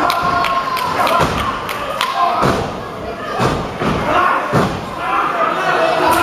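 Several heavy thuds, roughly a second apart, of wrestlers slamming into the ring and into each other during a multi-man brawl. Voices shout over them.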